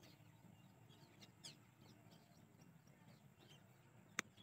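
Near silence outdoors: faint, scattered short bird chirps over a low steady background hum.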